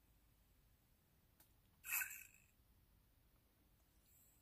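Near silence: room tone, broken about two seconds in by one brief hissing sound.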